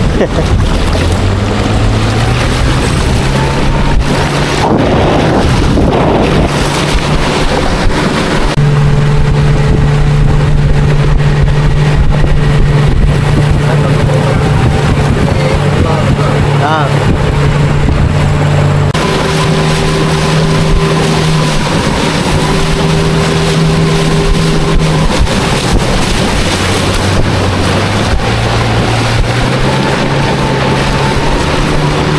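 Small river boat's outboard motor running steadily under way. Its pitch steps up about a third of the way in and eases back down in the second half, over a constant rush of water.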